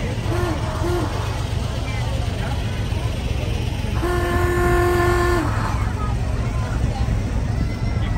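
A vehicle horn from a passing parade car sounds two short toots in the first second, then one long, steady-pitched honk of about a second and a half about four seconds in. Under it runs the steady low rumble of slow-moving engines.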